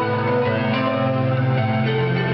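Live band music heard from the audience: sustained, chiming chords with a bell-like ring, holding steady and shifting pitch a couple of times.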